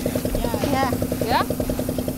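A small engine running steadily with a rapid, even beat.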